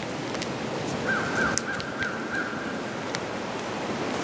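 Electrical tape being wrapped tightly around a bundle of power cables, giving light handling clicks over a steady outdoor background hiss. A faint thin whistle-like tone runs for about two seconds in the middle.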